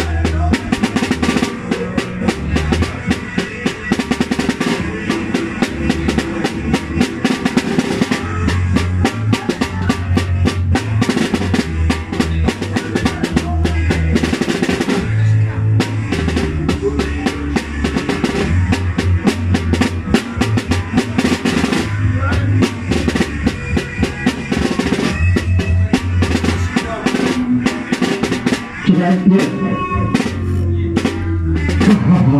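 Live band jamming without vocals: a drum kit played busily with snare and bass drum over an electric bass line and electric guitar.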